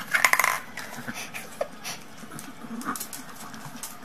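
A paper cup knocked over and batted across a hard floor by a pug: a quick rattle of clicks lasting about half a second at the start, then scattered light taps and clicks as the dog keeps at it.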